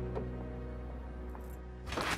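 Background music: low, sustained chords of a drama score, slowly fading down.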